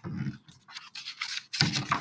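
Page of a hardcover picture book being turned by hand: a brushing rustle of paper, loudest near the end as the page swings over.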